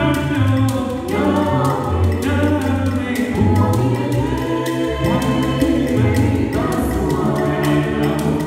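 A cappella vocal group singing in close harmony over a deep sung bass line, with a beaded gourd shaker keeping a steady beat.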